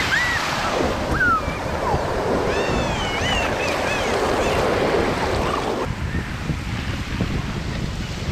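Sea surf washing in and foaming over rocks and sand, a steady rushing wash that drops slightly quieter about six seconds in.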